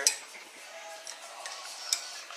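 Light metallic clicks from handling wire at a cordless drill's chuck and mandrel: one sharp click just after the start and another near the end, with faint handling noise between.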